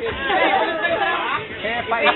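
Several people talking at once in an indistinct group chatter, overlapping voices with no single clear speaker.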